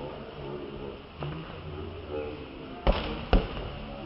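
Two sharp slaps of a volleyball being struck by hand, about half a second apart near the end, over low talk from players and onlookers.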